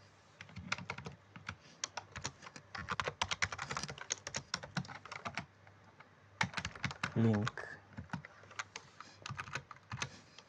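Typing on a computer keyboard: quick, irregular runs of keystrokes, with a short lull about halfway through.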